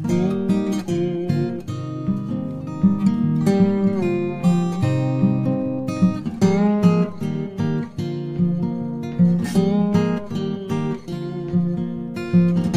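Background music: strummed acoustic guitar playing chords.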